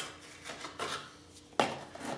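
Spoon scraping wet grout in a plastic tub and packing it into a drill's plastic battery case: a few short scrapes and knocks, the sharpest about one and a half seconds in.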